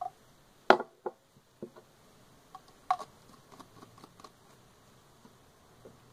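A plastic spray bottle handled in rubber-gloved hands as its sprayer head is screwed on: a string of clicks and taps, the loudest about a second in, then a run of small ticks from the cap threads.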